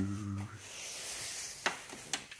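A man's held hum fades out about half a second in, then soft rubbing and handling noise follows, with a light click near the end.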